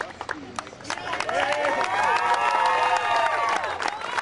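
A group of young boys cheering and shouting together, their many high voices rising about a second in and lasting until just before the end, with scattered hand clapping throughout.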